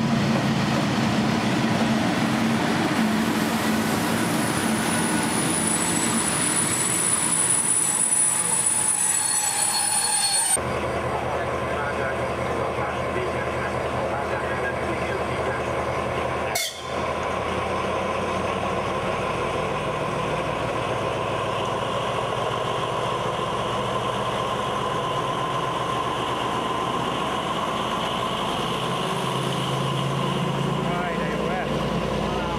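A passenger train hauled by an electric locomotive rumbles in along the platform, with a high thin whine over it. After a cut about ten seconds in, a MÁV M41 diesel-hydraulic locomotive passes close by with its diesel engine running steadily.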